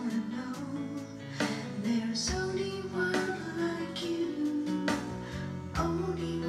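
A woman singing a children's song with held notes over an instrumental backing track.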